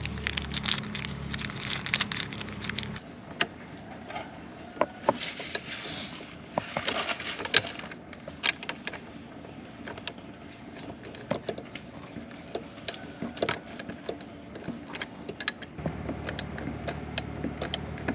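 Small plastic bag crinkling, then scattered light metallic clicks and knocks of a hand tool and screws as the radiator cover's top screws are fastened. A steady low hum sits underneath for the first few seconds and again near the end.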